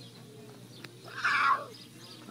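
Young lion cub giving one short, raspy cry about a second in that drops in pitch at the end: a cub calling for its mother.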